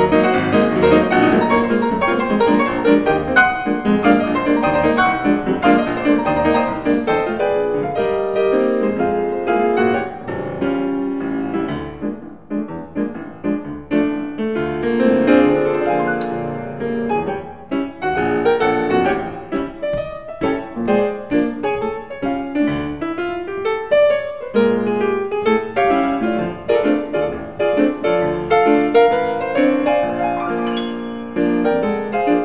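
Steinway & Sons grand piano played solo in an old-time style: a busy, continuous run of notes that softens briefly about twelve seconds in and again around twenty seconds.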